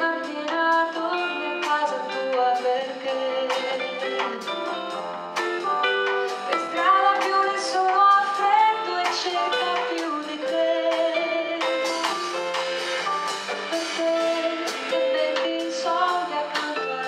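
A woman singing live into a microphone, backed by a small band with drum kit and cymbals. The held notes of the accompaniment run under her melody throughout, with steady drum and cymbal strokes.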